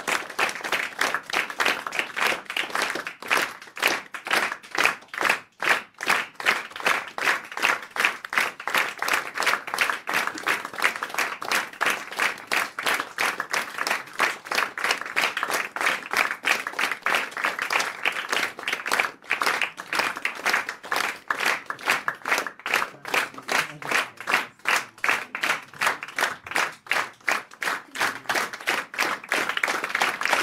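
Theatre audience applauding a curtain call, many hands clapping together in a steady, even rhythm.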